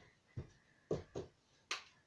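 A few short dull knocks, then a sharp click near the end: a wall light switch turning off the room's ceiling light.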